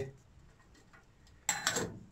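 A short cluster of sharp clicks about one and a half seconds in, after a near-quiet stretch.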